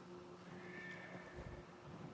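Quiet room with a steady low hum. A faint, brief squeak comes a little after the start, then a soft footstep thump, as a person walks across the floor.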